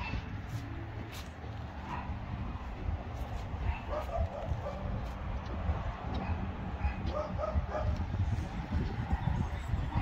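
A dog barking and yipping faintly a few times over a low, uneven rumble.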